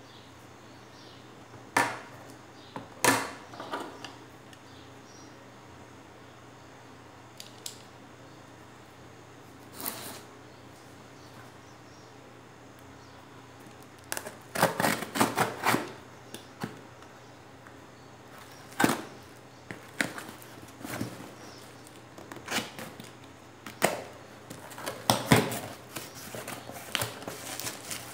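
Handling noises from opening a parcel: a few clicks and knocks as tools are set down, then a utility knife slicing through the packing tape on a cardboard box in a burst of short scrapes about halfway through. After that come repeated rustles and crackles of cardboard flaps and bubble wrap as the box is opened.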